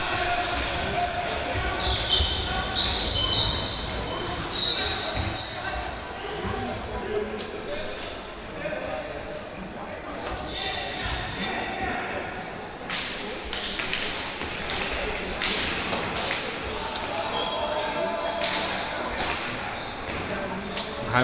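Indoor hockey play echoing in a large sports hall: sticks striking the ball in sharp knocks, coming thick and fast in the second half, with short high squeaks early on and players' distant voices.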